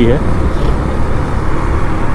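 Riding noise from a KTM Duke 390 single-cylinder motorcycle: the engine running under an uneven low rumble of wind buffeting the helmet microphone, with traffic around.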